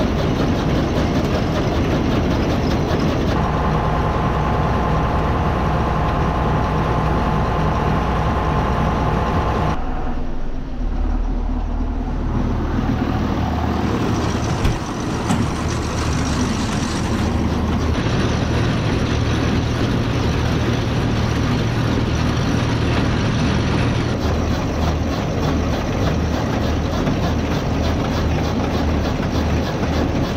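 Farm tractor engines running steadily with a silage elevator conveyor carrying chopped corn silage up onto the pile. The sound changes abruptly every few seconds between stretches, one of them from inside a tractor cab.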